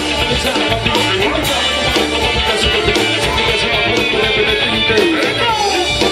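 Live band music played loud through a PA, with drums and electric guitar over a steady beat.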